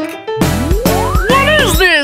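Children's cartoon music with a comic sound effect: one long whistle-like glide rising steadily from low to very high over about a second and a half, starting about half a second in, with a cartoon character's voice near the end.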